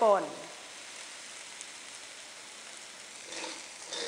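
Fried rice sizzling steadily in a wok, an even hiss. Near the end a spatula starts stirring and scraping the rice around the pan.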